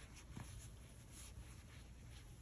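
Faint rustling and soft ticks of a crochet hook working through super bulky yarn.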